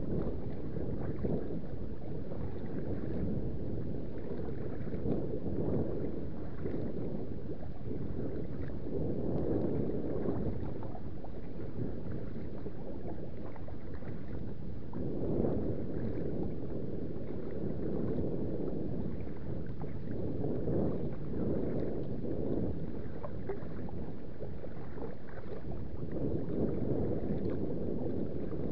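Choppy lake water lapping and splashing against a kayak's hull, with wind buffeting the microphone, swelling unevenly every second or two.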